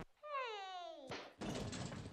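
A cat's single long meow that falls steadily in pitch, followed about a second in by a thump and a short spell of noise.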